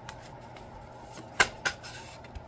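A deck of tarot cards shuffled by hand, with two sharp card snaps close together about a second and a half in, over a faint steady hum.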